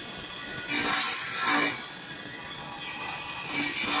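Stainless steel sink panel drawing machine running: its motor-driven abrasive head rasps over the steel in uneven surges, the loudest lasting about a second shortly after the start, with a low motor hum coming and going.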